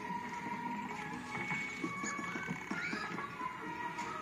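Light orchestral film score playing through a TV speaker, with a busy patter of small taps and clicks underneath.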